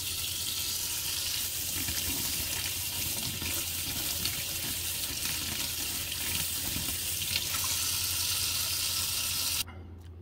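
Kitchen tap running steadily into a stainless steel sink, the stream splashing over a carbon water filter cartridge held under it to rinse out carbon dust after soaking. The water cuts off suddenly shortly before the end.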